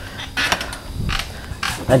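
A few light clicks and knocks with a little clatter as the travel trailer's entry and screen door is handled and something is picked up from the floor just inside the doorway.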